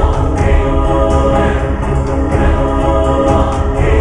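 Film score music: held choir-like voices over a deep low drone, steady throughout.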